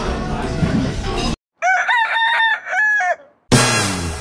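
Restaurant clatter and chatter for about a second, then after a sudden cut to silence a loud crowing call in about five linked pitched syllables, ending on a falling note, before another cut.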